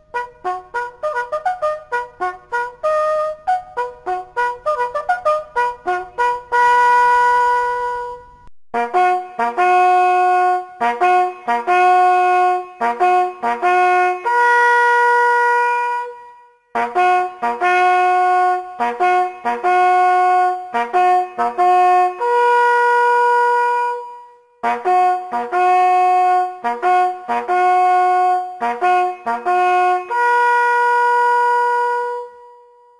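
Hunting horn playing a fanfare: phrases of short quick notes, each ending on a long held note, repeated with brief pauses between them.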